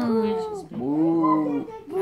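A young child's voice calling out twice in drawn-out, sing-song "nee" sounds (Dutch for "no").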